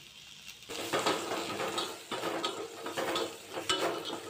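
Curry leaves and chopped onions sizzling in hot oil in a steel pan, with many short sharp crackles as the leaves spit. It starts under a second in, after a near-silent moment.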